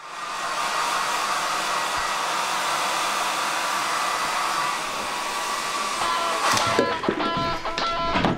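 A steady rushing noise starts abruptly and holds for about six seconds, swelling briefly near the end. Music with plucked guitar then comes in.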